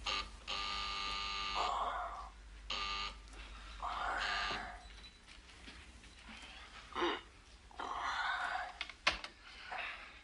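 An electric buzzer ringing for about a second, then a shorter ring a second later, with hissing bursts between and after.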